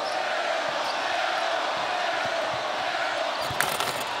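Steady crowd noise in a basketball arena during live play, with the ball bouncing on the hardwood court and a sharp impact near the end.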